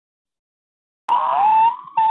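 Silence for about a second, then a child's loud, high crying wail cuts in suddenly over a video call's thin audio, its pitch sagging downward.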